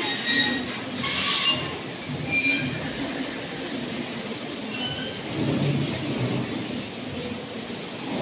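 A large cloth-panelled screen's frame squeaking as it is pushed into place: several short high squeaks spread over the first five seconds, over a murmuring room.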